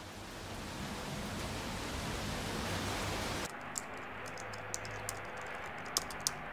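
Steady rain falling, fading in at the start. About halfway through it cuts off abruptly to a quieter room with scattered keyboard clicks of typing.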